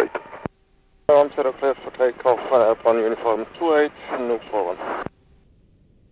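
A voice over an aviation radio, switching on abruptly about a second in and cutting off with a click near the end, with only a faint low background after it.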